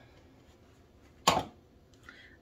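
A single sharp clack about a second in, against a quiet room: a small plastic hand-sanitizer bottle being set down.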